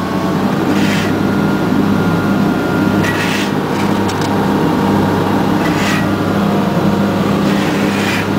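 Excavator's diesel engine running steadily under load as it lifts a steel trench shoring box on chains, heard from inside the cab: a continuous low drone with a few brief hisses.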